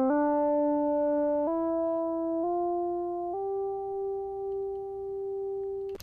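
A synth tone ramping up a fifth, pitch-corrected by Antares Auto-Tune 5 set to the C major scale, so it jumps in steps from note to note instead of gliding. It steps up through D, E and F, about one note a second, and settles on G, which is held for the last two and a half seconds.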